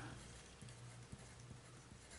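Faint pencil writing on paper, a few light scratches and ticks of the pencil point as a word is written, over near silence.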